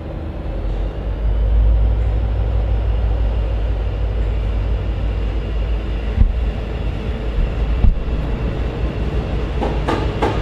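V/Line locomotive-hauled passenger train pulling out, its carriages rolling past close by with a steady low rumble that builds about a second in. Two sharp knocks come through, one past the middle and one a little later.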